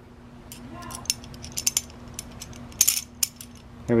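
Light metallic clicks and clinks of flat steel grappling-hook plates, a linkage and a bolt and nut being handled and fitted together, with a brief denser rattle about three seconds in.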